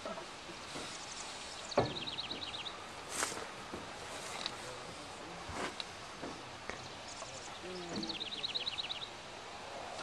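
A small songbird sings a short, rapid trill of high notes twice, about two seconds in and again near the end. Scattered sharp knocks of tools on the car's underside sound between the trills, the loudest just before the first trill.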